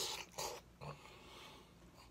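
Loud wet mouth noises from a person eating with his fingers in his mouth: two sharp sucking smacks about half a second apart near the start, then a smaller one and quieter chewing.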